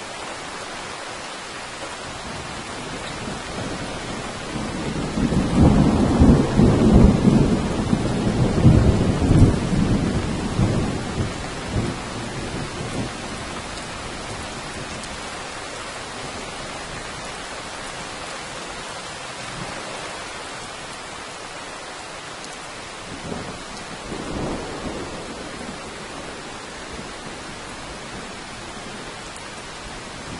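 Steady rain with a long, loud roll of thunder starting about five seconds in and rumbling for several seconds before fading, then a second, fainter rumble near the end.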